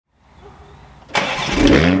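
Toyota Supra's B58 3.0-litre turbocharged inline-six starting up through its stock rear exhaust: it catches suddenly about halfway through and the revs flare upward.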